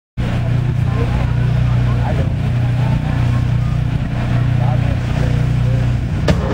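Steady, loud low hum from the live stage's sound system, with faint voices wavering above it.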